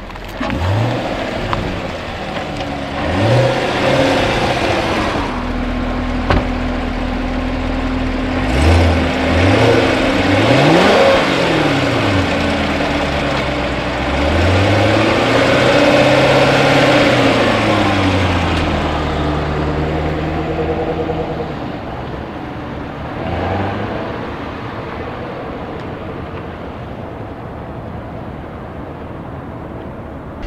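2016 Chevrolet Corvette Stingray's 6.2-litre V8 revving and accelerating, its pitch climbing and dropping again and again as the car is driven. The sound grows quieter and steadier in the last third.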